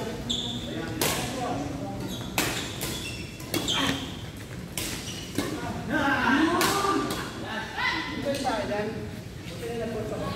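Badminton rackets striking a shuttlecock in a doubles rally: about six sharp hits, roughly one every second, echoing in a large hall. Voices are heard in the second half.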